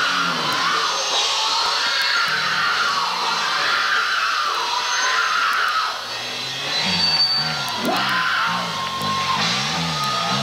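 Metal band playing live, the lead singer yelling the vocal over electric guitar, bass and drums; from about seven seconds in a low riff rises and falls in a repeating wobble.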